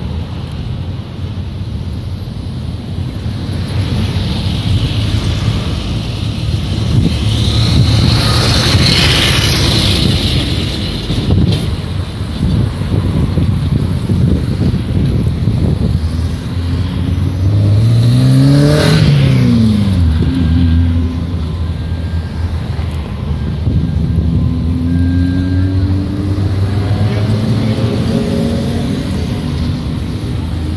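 Street traffic: cars driving past close by, tyre and engine noise swelling and fading. The loudest pass comes about two-thirds of the way through, its engine pitch rising and then dropping as it goes by.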